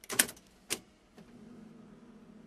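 Selector keys of a 1956 Wurlitzer 2000 jukebox being pressed: a loud mechanical clatter of key clicks at the start and one more sharp click a moment later. About a second in, a low steady motor hum starts as the machine's mechanism begins running after the selection.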